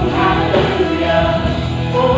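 Live praise-and-worship music: a worship team singing a slow song with a band, the congregation singing along, in long held notes over a steady low accompaniment.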